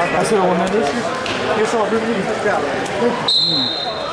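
Voices around a wrestling mat in a busy gymnasium, then a single short, steady, high whistle blast near the end, most likely a referee's whistle.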